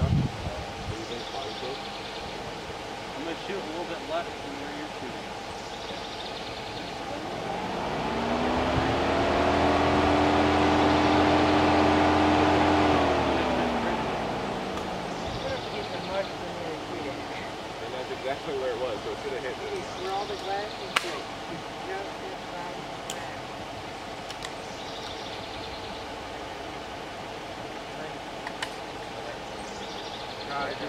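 A road vehicle drives past: its engine swells from about seven seconds in, is loudest for several seconds, then fades, its pitch falling as it moves away. A single sharp crack follows about five seconds later, with a couple of fainter clicks after it.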